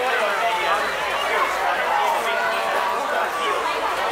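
Overlapping voices of shoppers and stallholders talking at a busy market, a steady background chatter with no single clear voice.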